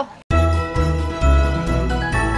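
Background music with jingling bells, sustained notes and a steady pulsing bass beat, cutting in suddenly about a quarter second in after a brief silence.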